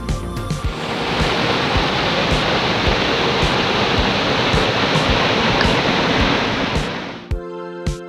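Rushing water of a small rocky mountain stream spilling down short waterfalls: a steady, dense rush that comes in about a second in and fades out near the end as background music returns. The music's beat carries on faintly underneath.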